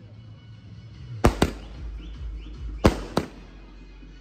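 A ground-set aerial firework going off: four sharp bangs in two close pairs, about a second and a half apart.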